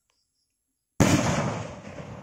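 A kwitis skyrocket bursting high in the air: one sharp, loud bang about a second in, followed by a rolling echo that fades over about a second.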